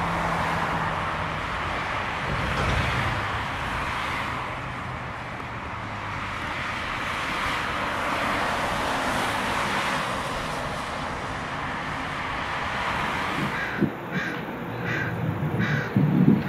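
A car driving along a wet street: steady road and tyre noise over a low engine hum. Near the end the sound changes suddenly and a bird calls about five times in short calls.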